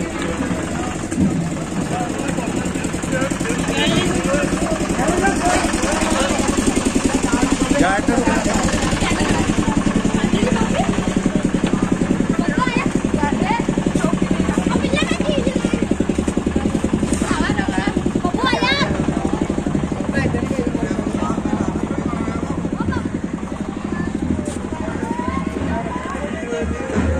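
A small engine running steadily close by, a fast even beat under the whole stretch, with people's voices scattered over it.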